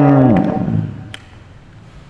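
A man's voice drawing out the end of a word, held for under a second and sinking slightly in pitch as it fades. Then a pause with a steady low hum and one faint click.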